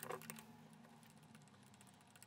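Faint, light metallic clicks of a small wrench working a bolt loose on the stainless pump head. A short cluster comes right at the start, then only a few scattered ticks.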